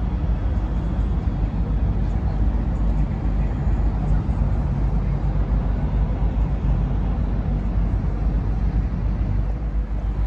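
Steady deep rumble of a yacht under way, its engine running at cruising speed as it moves up the river.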